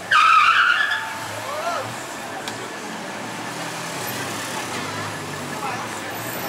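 Busy night-time street ambience with passing voices and a low traffic hum, opened by a loud high squeal lasting under a second.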